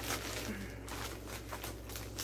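Paper and plastic wrapping rustling and crinkling in irregular bursts as a stuffed package is pulled open by hand.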